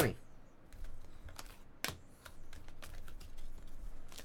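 Light clicks and slaps of glossy chrome trading cards being flipped through by hand and slid against one another, with one sharper tap about two seconds in.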